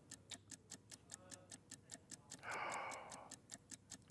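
Fast, steady ticking of a countdown-clock sound effect, about four to five ticks a second. A short rush of noise comes in the middle.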